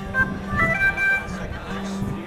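Live band's music trailing off at the end of a song, leaving crowd voices and a few short, high guitar notes.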